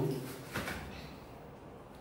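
Quiet shuffling of bodies on foam floor mats, with one soft knock about half a second in.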